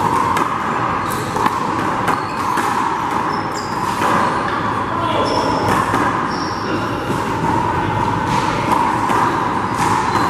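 A rubber handball bouncing a few times, each a sharp knock, spread across the court, with short high sneaker squeaks, all over a loud steady hum of room noise.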